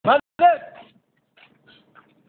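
Two short, loud vocal calls with sliding pitch in the first second, then only faint sounds.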